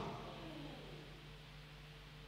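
Faint room tone with a low steady hum, as a man's last loud word dies away in the hall's echo within the first half second.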